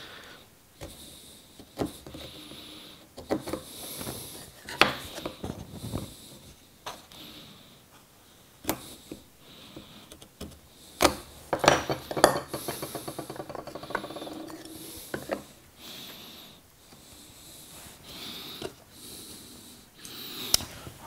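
Bench chisel (vintage Stanley 750) hand-paring a walnut dovetail tail: irregular short scrapes of the blade shaving end grain and light clicks of steel on wood, with a longer scrape past the middle. The tail is being trimmed because it is not quite square.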